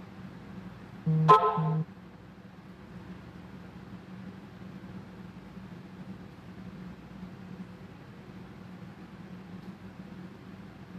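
A short double beep or toot, under a second long, about a second in, over a steady low hum.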